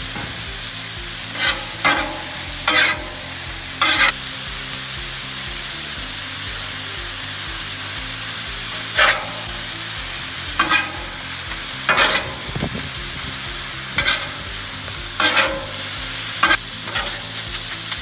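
Ribeye, peppers and onions sizzling steadily on a Blackstone flat-top griddle. About ten sharp clanks and scrapes of metal spatulas on the steel cooktop break the sizzle as the meat is chopped and turned.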